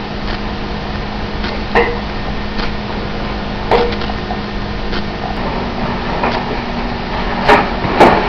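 A gloved hand striking the top of a glass bottle held by its neck: three sharp knocks, about two seconds in, near four seconds and near the end, over a steady low hum.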